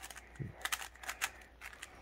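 Magnetic 3x3 speed cube (GAN 356 M) being turned quickly by hand: a fast, irregular run of light plastic clicks as the layers turn and the magnets snap them into place.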